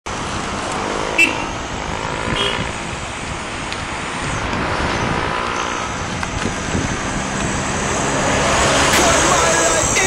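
Steady rush of road and traffic noise heard from a moving bicycle, with a single sharp click about a second in.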